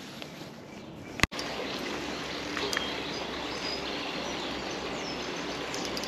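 Steady outdoor background noise with a faint low hum, broken about a second in by a sharp click where the recording cuts and the background grows louder.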